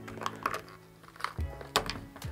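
A handful of light plastic clicks and taps as the old ratchet-style chin strap hardware is worked loose on a Riddell SpeedFlex football helmet, the sharpest click near the end. Soft background music runs underneath.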